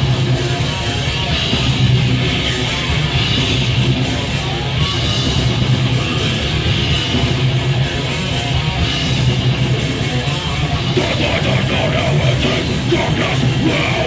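Live heavy metal band playing loud and steady: distorted electric guitars, bass guitar and drum kit.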